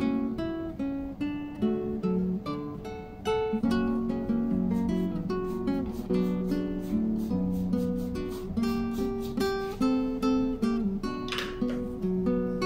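Background music: acoustic guitar playing a steady stream of plucked notes.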